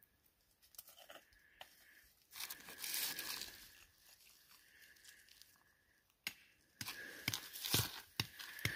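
Gloved hands handling a chunk of chalcopyrite-bearing quartz ore over loose gravel and rock. A scraping, crinkling rustle comes about two and a half seconds in, and a quick run of clicks and crunches of rock on gravel comes near the end.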